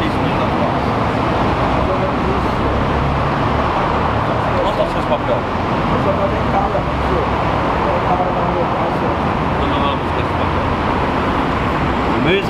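Steady traffic noise from cars driving past on a busy multi-lane road, loud and unbroken throughout.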